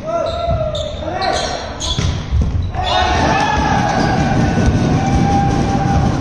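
Volleyball rally in an echoing sports hall: sharp smacks of the ball being hit, with players shouting. About three seconds in, a louder, steadier wash of voices sets in.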